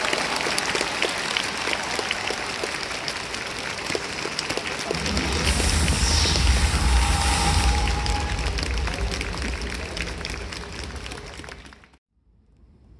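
Crowd in a domed baseball stadium clapping as the home team scores a run on a wild pitch: a dense, steady patter of applause. About five seconds in it swells, and a deep low rumble joins it before fading out near the end.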